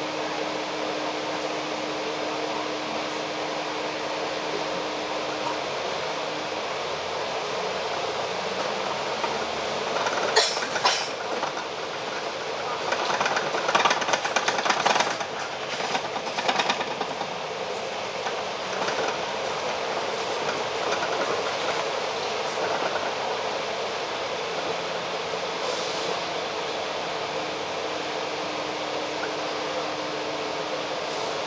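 Cabin noise on the upper deck of a Volvo Olympian double-decker bus: a steady drone while it stands in traffic, then driving on. A louder rattling clatter comes about ten seconds in and lasts several seconds.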